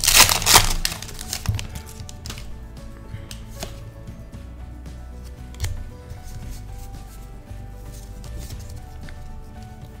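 Foil booster-pack wrapper torn and crinkled open in the first second. Then soft clicks and rustles of trading cards being handled, over quiet background music.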